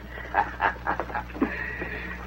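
A man chuckling: about five short, throaty laughs in quick succession.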